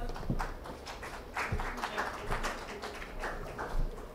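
Scattered clapping from an audience, a patter of separate hand claps that picks up about a second in and thins out near the end.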